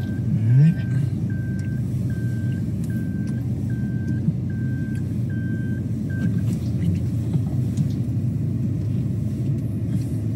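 A car driving, heard from inside the cabin as a steady low engine and road rumble. A short rising sound comes about half a second in. A high electronic beep repeats a little over once a second and stops about six seconds in.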